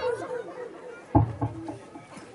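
Only speech: low background chatter of voices, with a short spoken word or two about a second in.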